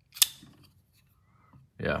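High Grain Designs Deville prototype folding knife flipped open, the blade snapping into lock with one sharp metallic click.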